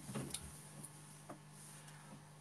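Quiet room tone with a steady low electrical hum, broken by a brief murmur of a voice at the start and two faint clicks about a second apart.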